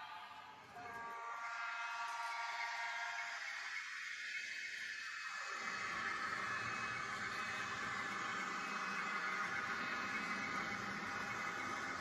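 N-scale model trains running on a layout: a steady rolling and motor hum from the small locomotives and wheels on track, with a few brief whining tones early on.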